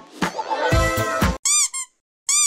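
Background music that stops about one and a half seconds in, followed by two short, high cartoon squeak sound effects, each rising and falling in pitch.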